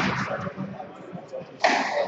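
Squash ball being struck twice, about a second and a half apart, each hit sudden and echoing in the court.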